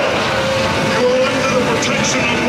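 Loud, steady roaring rumble of a live special-effects show soundtrack, with low tones gliding in pitch, as gas flame effects fire.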